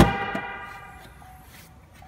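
A short, loud pitched tone with many overtones sounds right at the start and rings away over about a second and a half.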